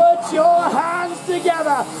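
A man's excited race-commentary voice calling out in drawn-out, rising and falling cries, with no clear words.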